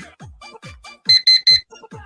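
Online countdown timer's alarm going off as it reaches zero: three quick, loud, high-pitched beeps about a second in, over background electronic dance music with a steady beat.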